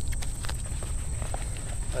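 Scattered light clicks and knocks of gear being handled and drawn out of a nylon sling pack, over a steady high chirring of crickets and a low wind rumble.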